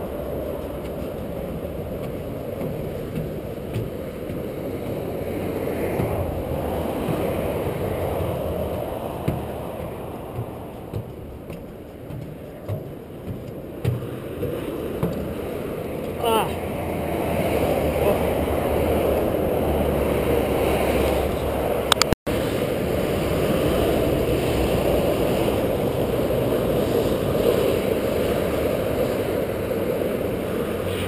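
Steady noise of motorway traffic passing beneath a footbridge, mixed with wind on the microphone. A few sharp knocks come through the middle of it.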